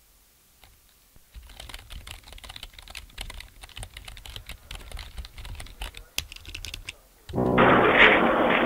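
Rapid, irregular clicking and tapping starts about a second in and runs on for several seconds. Near the end a much louder, muffled sound cuts in abruptly.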